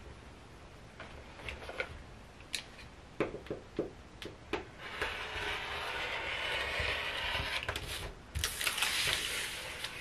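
A rotary cutter rolling along a clear acrylic ruler, slicing through tissue-like paper pattern on a cutting mat: a few light clicks and taps as the ruler is set, then a steady scraping cut through the middle. A louder rustle of the pattern paper follows near the end.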